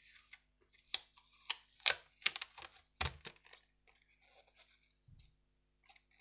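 Clear adhesive tape being peeled up off the cutting-mat tabletop from a balsa tail fin and crinkled in the hands, giving a few sharp crackles in the first three seconds and a softer rustle later on.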